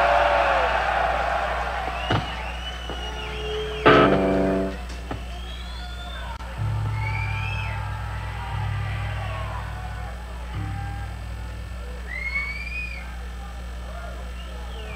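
Live crowd cheering and whistling in the gap after a thrash metal song ends, over a steady amplifier hum. A single guitar chord rings out about four seconds in, and low bass notes sound on and off in the second half.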